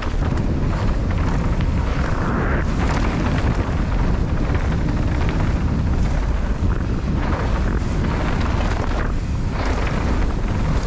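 Mountain bike descending a rough dirt trail at speed: steady wind buffeting on the on-board camera's microphone, with tyre roar and a constant patter of small knocks and rattles from the bike going over the bumpy ground.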